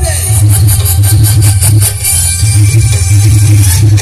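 Dance song blasting through a large outdoor DJ speaker stack at very high volume, with heavy bass.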